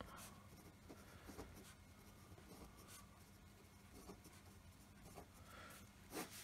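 Faint scratching of a pen writing on lined notebook paper, in short irregular strokes.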